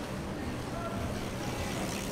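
City street noise: a steady low rumble of a motor vehicle under faint voices of passers-by.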